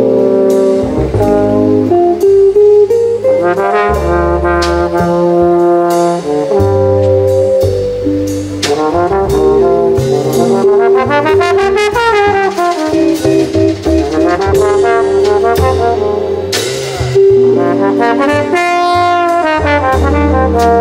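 Valve trombone playing a jazz solo line, its pitch rising and falling smoothly, over double bass and drums with cymbals.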